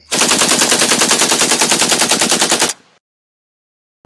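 Intro sound effect of rapid automatic gunfire, an even burst of about ten shots a second lasting roughly two and a half seconds and cutting off abruptly.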